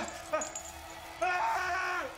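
A man crying out in pain: a short yelp about a third of a second in, then a longer, louder wail from just past a second in.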